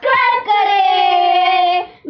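A child singing: a short opening note, then one long held note that drops slightly in pitch and breaks off just before the end.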